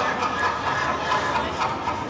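Film soundtrack audio played over a hall's loudspeakers, a steady noisy background with a faint murmur and no dialogue in it.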